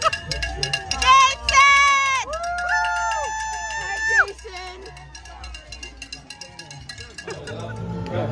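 Roadside spectators cheering passing cyclists with long whoops and calls, loudest in the first half and dying down after about four seconds.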